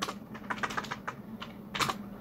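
Computer keyboard being typed on: a run of irregular key clicks, with one louder keystroke near the end.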